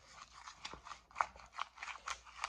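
A spoon stirring and scraping a gritty sugar, honey and petroleum-jelly scrub in a small plastic tub: irregular crunchy scrapes with a few sharper clicks.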